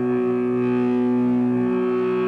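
Electric guitar through stage amplifiers holding one sustained, steady droning note that rings on unchanged.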